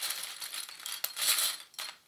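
Hands handling knit fabric and small plastic sewing clips: rustling in several short surges, with light clicks and clinks as a clip is fastened onto the placket.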